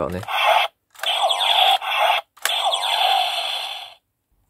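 Bandai Gaburichanger toy gauntlet playing its electronic attack sound effect through its small speaker, set off by pulling the lever with no Zyudenchi loaded, a variant unlike its normal attack sound. A short burst comes first, then two longer zapping sounds with falling sweeps.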